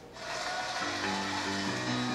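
An audience applauding, with a song's instrumental intro starting about a second in as sustained, held notes.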